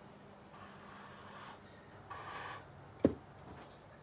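Two short puffs of breath blown through a straw to push wet alcohol ink across a card, followed by a sharp knock about three seconds in.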